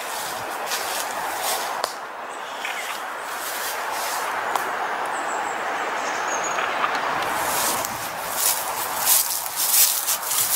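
Footsteps swishing through long grass and fallen dry leaves, thickening into quick irregular steps over the last couple of seconds, over a steady outdoor background hiss.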